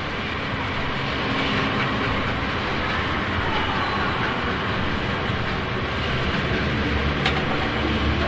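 Steady rumbling noise, train-like, that fades in at the start and then runs level: the recorded intro of the record before the band comes in.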